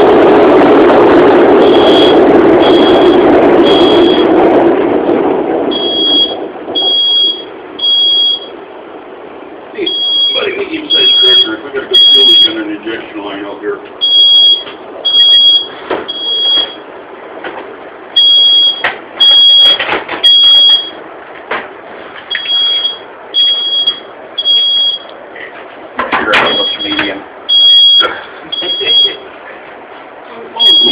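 A submarine's diesel engine running loudly, then dying away over the first five or six seconds. From about two seconds in, an alarm beeps in a high steady tone in repeating groups of three with a short pause between groups, the pattern of a smoke alarm.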